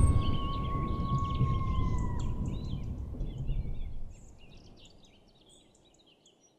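Nature ambience tailing off under an animated logo: a low rumble that fades away, a held tone that dips and stops about two seconds in, and small birds chirping over it until the sound cuts out near the end.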